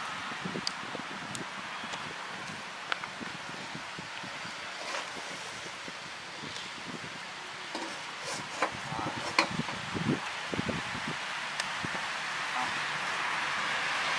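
A little cooking oil heating in a large aluminium stockpot: a steady hiss with scattered faint ticks and crackles, growing slightly louder toward the end as the oil gets hot.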